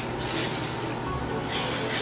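Background music, with ice rubbing and clinking in a glass as a drink is stirred with a plastic straw.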